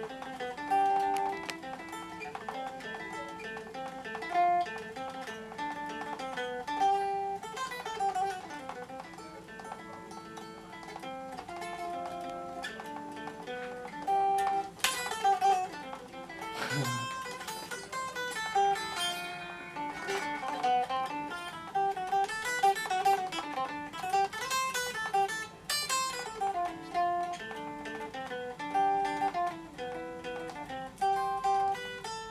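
Fender electric guitar played in a Malian style: quick runs of plucked single notes and repeating melodic figures, with a couple of sharp chord strikes about halfway through.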